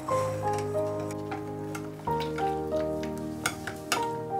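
Background music: short phrases of falling notes over a low bass, repeating about every two seconds. Under it, a wire whisk clicks irregularly against a ceramic bowl as it beats egg yolks and sugar.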